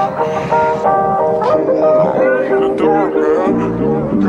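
Music with plucked-string notes, with voices mixed in over the second half.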